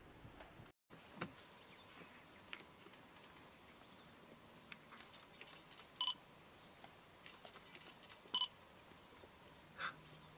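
A spotted hyena gnawing at an eland carcass's head: faint, scattered clicks and crunches of teeth on bone and hide. Two short, high chirps stand out, about six and eight and a half seconds in.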